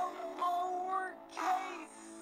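A slowed-down song: a synthetic-sounding sung voice over a backing of steady held tones.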